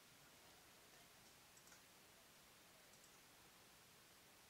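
Near silence: faint hiss with a few very faint clicks.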